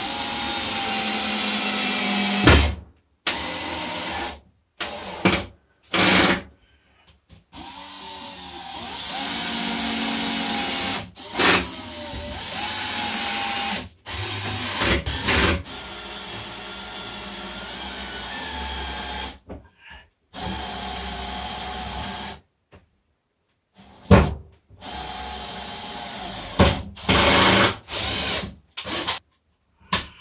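Parkside cordless drill-driver running in many short bursts as it drives screws into OSB panelling, its motor whine rising and falling in pitch and stopping and starting abruptly, with a few sharp knocks in between.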